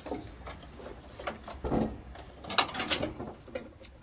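Metal brake pipes being bent and pulled free by hand, giving irregular clicks, knocks and scrapes that cluster more thickly in the second half. A short laugh comes near the end.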